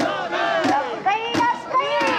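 Many mikoshi bearers shouting a carrying chant together as they shoulder the portable shrine, a dense mass of overlapping voices.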